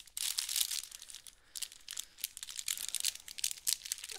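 Irregular crinkling rustle and small clicks of paintbrushes being handled and sorted while a replacement brush is picked out.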